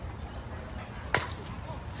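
Fastpitch softball bat hitting a pitched ball: a single sharp crack a little past halfway.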